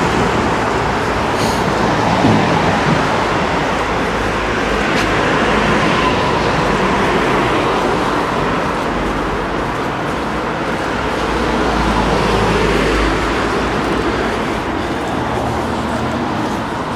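Road traffic on a town street: cars driving past close by, a steady noise of tyres and engines, with a low rumble swelling about three-quarters of the way through as a vehicle passes.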